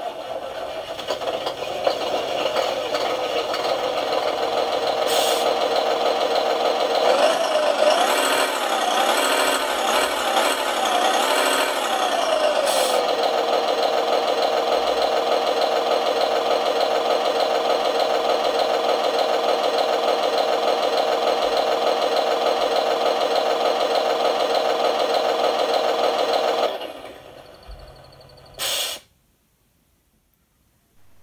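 Simulated diesel truck engine sound played by an ESP32-based RC sound controller through the model's speaker, while the controller's shaker motor vibrates the truck. It runs steadily, revs up and down a few times between about 7 and 13 seconds, and cuts off about 27 seconds in.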